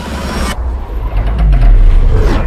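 Movie-trailer soundtrack: a noisy rush that cuts off about half a second in, then a deep bass swell that builds in loudness, with a tone sliding downward near the end.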